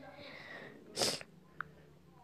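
A short, sharp sniff close to the microphone about a second in, followed by a faint tick.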